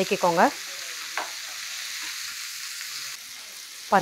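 Chopped onions, tomatoes and green chillies sizzling in a hot kadai as they are stirred and mashed with a spatula: a steady hiss of frying.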